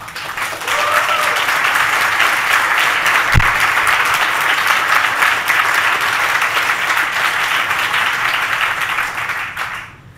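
Audience applauding in a hall: the clapping builds over the first second, holds steady and loud, then dies away near the end.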